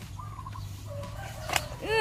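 A chicken clucking faintly, ending with a louder arching call near the end, with a single sharp click about halfway through.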